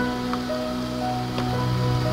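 Background music of soft, sustained held notes, with a new note coming in about half a second in.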